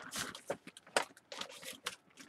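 Plastic food packaging rustling and crinkling as it is handled, with a few sharp clicks.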